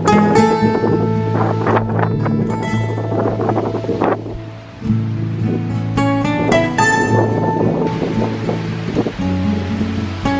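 Background music: an acoustic-guitar instrumental with plucked notes over steady low notes. It thins out briefly a little before the middle.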